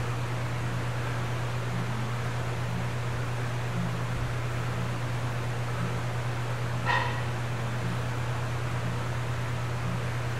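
Steady low hum of background noise, with a single short high-pitched yelp about seven seconds in.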